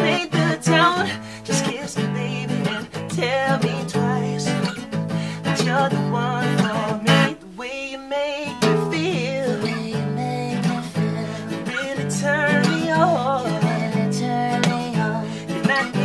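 Acoustic guitar strummed in a steady groove under a man's singing voice. About halfway through, the guitar chords stop for about a second before coming back in.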